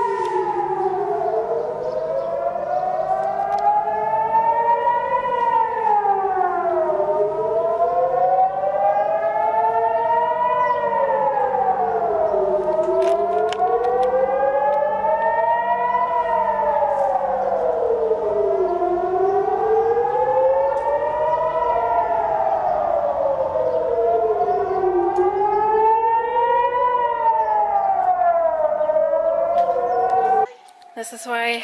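Civil-defence air raid siren wailing, rising and falling in pitch about once every five to six seconds, with a second out-of-step wail overlapping it. It is the warning that rockets are incoming.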